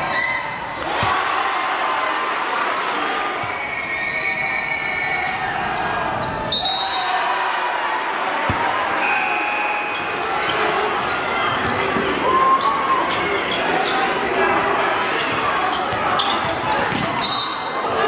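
A basketball bouncing on a hardwood gym floor, a few separate thuds, over the steady chatter and shouting of a crowd, echoing in a large gym.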